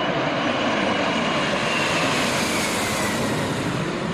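Aircraft flying past: a steady engine roar with a faint whine that falls in pitch through the middle.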